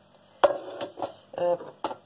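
Metal spoon clinking and scraping against a stainless steel pot: a few sharp clinks with brief ringing, the first about half a second in and the last near the end.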